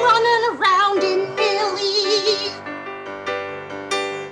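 A woman singing over piano accompaniment, holding a note with a wide vibrato; her voice stops about two and a half seconds in while the piano chords carry on.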